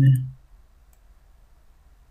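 A man's voice finishing a word, then a single faint computer mouse click about a second in, over a low steady hum.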